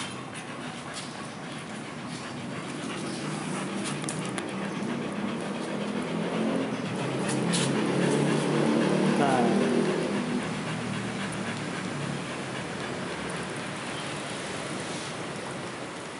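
Dogs panting. A louder low sound swells up and fades away about halfway through.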